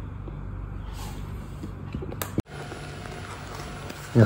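AGARO robot vacuum-mop running in mopping mode on a tiled floor: a steady low motor hum. A brief louder sound comes a little after two seconds in, followed by a momentary break.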